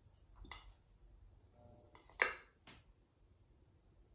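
A few faint, short handling sounds as wet fingers press and squeeze a soft clay bowl rim, the loudest about two seconds in.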